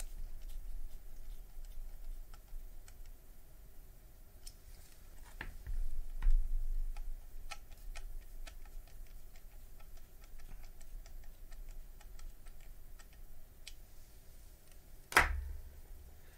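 Small screwdriver driving self-tapping screws into a plastic lamp base: an irregular run of faint clicks and ticks, with a louder knock about a third of the way in and a sharp knock near the end.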